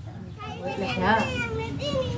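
Children's voices at play: calls and chatter, with one high voice rising and falling about a second in.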